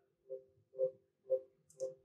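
Gerber DS2500 cutting table beeping: four short, evenly spaced beeps about two a second. It keeps beeping like this until its zero is set and the cut is started.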